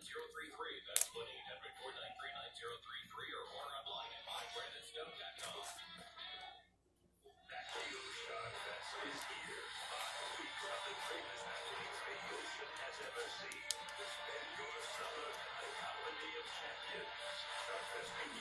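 Background television audio: voices at first, then a brief dropout to silence about seven seconds in, followed by music with voices. A single sharp click about a second in.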